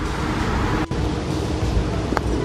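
Wind buffeting the microphone: a steady, uneven low rumble with hiss above it, briefly cut off just under a second in.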